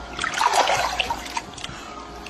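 Pool water splashing and sloshing close to a phone's microphone, busiest in the first second or so, then settling.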